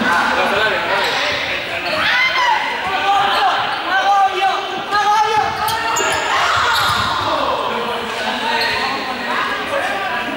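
Many young people's voices shouting and chattering at once, echoing in a large sports hall, with balls bouncing and thudding on the wooden floor.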